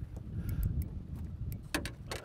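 Spinning reel being cranked while playing a fish fouled in weeds: scattered light clicks over a low steady rumble, with a couple of sharper clicks near the end.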